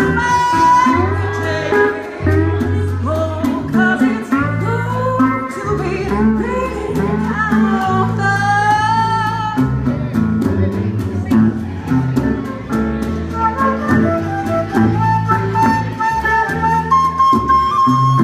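Live acoustic blues band playing an instrumental break: strummed guitars with a steady low line and hand-drum beat under a wavering lead melody. In the second half a flute takes the lead with held notes.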